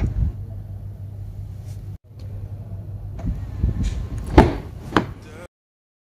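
A car door being shut: small knocks, then a heavy thud about four and a half seconds in and a second, sharper knock half a second later, over a steady low hum.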